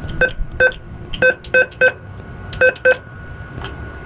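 Bank ATM beeping once for each key press as a check deposit amount is entered: seven short beeps in quick groups of two, three and two.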